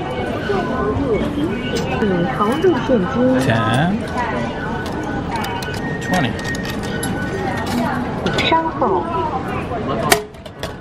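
Several voices chattering in a metro station hall, with short metallic clicks of coins being fed into a ticket vending machine midway.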